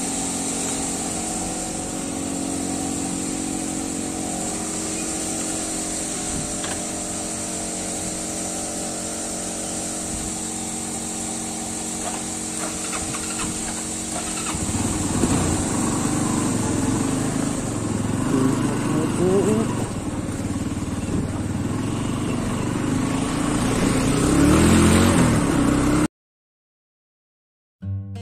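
TVS Apache motorcycle's single-cylinder engine idling steadily, then, about fifteen seconds in, pulling away and accelerating, its revs rising twice as it picks up speed.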